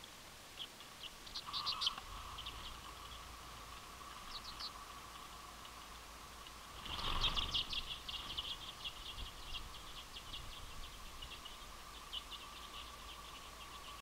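A flock of common redpolls calling in quick runs of high, dry chirps. About seven seconds in, the flock flushes off the feeder with a sudden rush of wings and a dense burst of calls, and scattered chirping carries on afterward.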